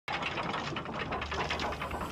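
Sound effect of clockwork gears turning: a rapid ratcheting tick of about ten clicks a second, with a low hum underneath.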